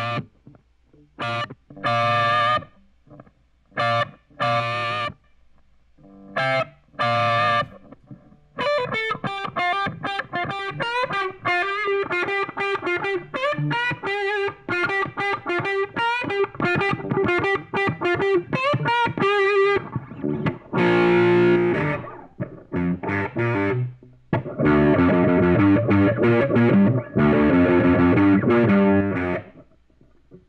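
Playback of a recorded electric guitar through a small Roland Micro Cube amplifier, heard through a 414 microphone set back from the amp, sounding a little phasey. Short separate chord stabs come first, then a quick run of single notes from about nine to twenty seconds in, then repeated held chords in the last ten seconds.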